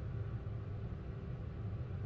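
A steady low mechanical hum with no clear rhythm or change.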